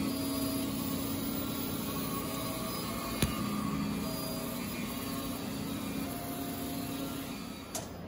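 Large-format 3D printer running: a steady hum with short stepper-motor whines that change pitch as the moves change, and a single click about three seconds in.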